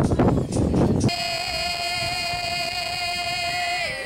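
About a second of open-air noise, then a folk singer's voice holding one long high note that slides down to a lower note near the end.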